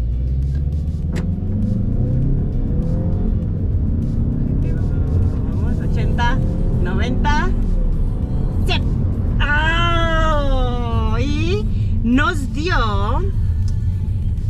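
Mazda 3 Turbo's 2.5-litre turbocharged four-cylinder engine under full-throttle acceleration from a standstill in a 0-100 km/h run, heard from inside the cabin: its pitch climbs, drops at an upshift and climbs again. Excited voices exclaim over it near the end.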